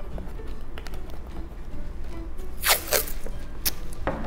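Masking tape ripped off the roll in two quick rasping pulls, then torn off with a short snap near the end. Background music plays underneath.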